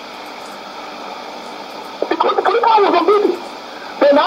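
Shortwave AM broadcast on a Sony ICF-2001D receiver: steady reception hiss with faint steady tones in a gap in the talk, then a voice speaking through the radio for about a second, halfway in.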